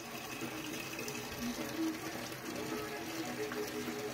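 Water gushing steadily from the inlet of a top-loading washing machine into its drum as it fills for a wash cycle. Faint background music can be heard underneath.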